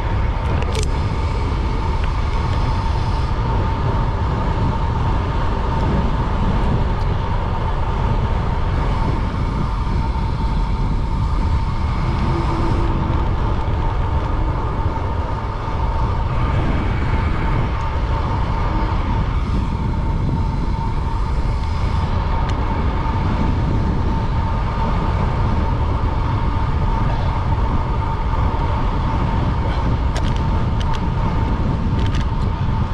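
Wind rushing over a bike-mounted camera's microphone, mixed with tyre noise on asphalt, from a road bike at about 30 mph, with a steady high whine through it.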